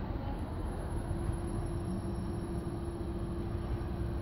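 Kone MonoSpace lift running, heard from the landing as a faint steady hum that starts about half a second in, over a low background rumble, while the called car travels to the floor.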